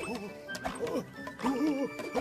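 Cartoon soundtrack: music under short, pitched vocal cries that swoop up and down, several to a second, with a few sharp clicks.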